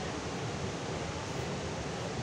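Water released through a dam's open spillway gates, pouring down the concrete face and crashing into the river below: a steady, even rushing.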